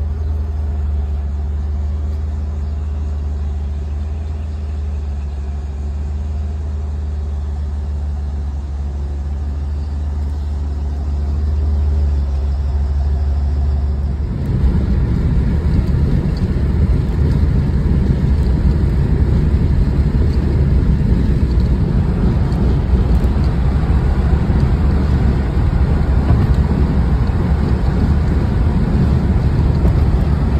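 Box Chevrolet Caprice's exhaust at idle, a steady low drone with a few held tones. About halfway through it cuts to the car driving at highway speed, heard from inside the cabin: louder, rougher engine and road noise.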